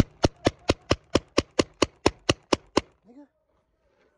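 Paintball marker firing a rapid string of about a dozen shots, roughly four a second, stopping near three seconds in.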